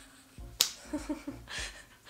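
A single sharp click a little over half a second in, followed by a faint voice.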